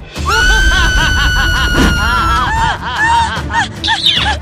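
A girl's long, high scream, held for about two seconds, over dramatic background music that carries on after it stops.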